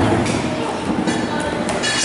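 Feet landing on a wooden plyo box with a dull thud at the very start, over the steady din of a busy gym.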